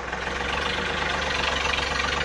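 Yanmar 1145 tractor's diesel engine running steadily with an even, rhythmic chug.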